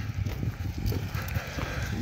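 Footsteps while walking, with a low rumble of wind on the microphone.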